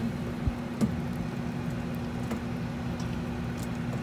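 Two light knocks of a metal fork against a speckled enamelware pot as it probes cooked chicken, about half a second and just under a second in, over a steady low hum.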